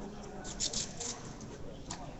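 Handling noise from a microphone being adjusted: a few short clicks and rustles about half a second in, and one sharp click near the end, over a low room background.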